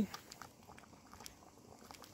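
Quiet background with faint, light handling sounds as a hard oatmeal ration cookie is picked up and held.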